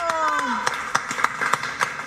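Scattered hand-clapping from a small studio audience after a song, with voices calling out over it.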